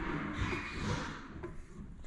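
Wooden stir stick stirring paint in a metal gallon can: a soft, steady swishing scrape.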